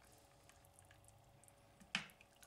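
Near silence: faint room tone with a steady low hum, and one brief knock right at the end.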